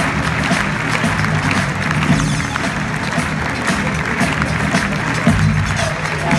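Music playing while an audience applauds.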